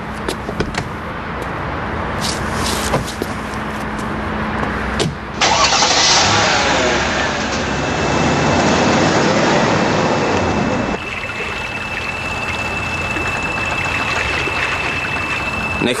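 A car engine starting and running, loudest for several seconds from about five seconds in, then a steadier, quieter running noise.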